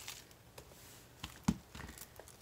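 Two cardboard playing-card boxes handled and set down on a tabletop: a few light taps and one sharper knock about one and a half seconds in.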